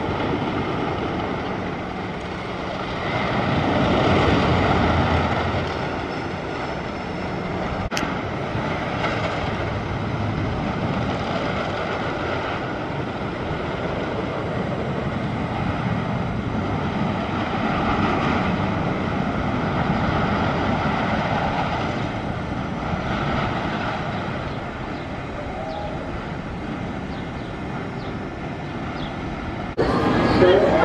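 Rumble of the Cornball Express, a Custom Coasters International wooden roller coaster, as its train runs along the track. The noise swells louder twice and eases off between, with one sharp click about a quarter of the way in.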